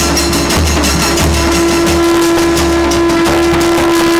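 Kailaya Vathiyam temple ensemble playing: drums and brass cymbals beat a fast, dense rhythm while a horn holds one long, steady note that stops near the end.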